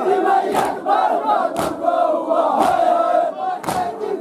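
A crowd of men chanting a noha together, with chest-beating (matam) slaps landing in unison about once a second.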